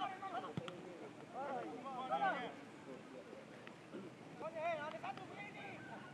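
Football players shouting calls to each other across the pitch in two loud bursts. One sharp knock of a boot striking the ball comes a little over half a second in.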